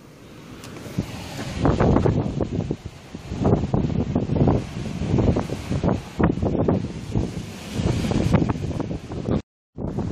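Strong wind buffeting the microphone in gusts, building up over the first couple of seconds.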